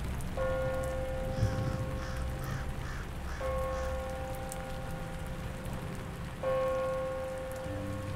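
Background rain ambience with a held musical note over it, struck three times about three seconds apart and fading slowly after each strike.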